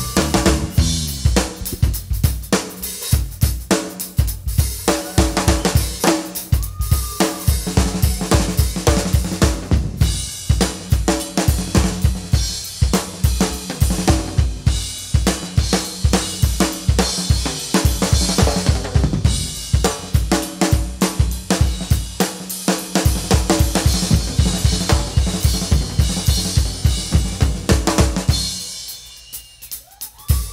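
Live drum solo on a full kit, with fast, dense strokes on bass drum, snare and cymbals. It breaks off suddenly about a second and a half before the end.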